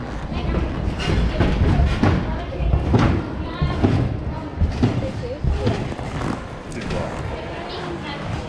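Repeated dull thuds of a person bouncing and landing on a trampoline bed, strongest in the first half, under indistinct chatter of people.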